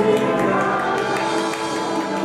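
Live salsa orchestra with several singers holding the last notes of a song. The bass stops at the start and the held notes slowly fade.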